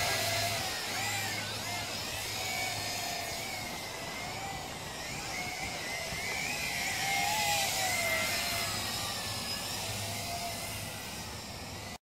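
Zoopa Mantis 600 toy-grade quadcopter flying, its motors and propellers whining, with the pitch wavering up and down throughout.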